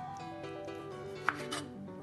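Kitchen knife chopping lime pieces on a wooden cutting board: two sharp knocks of the blade on the board about a second in, a quarter second apart, over background music with a stepping melody.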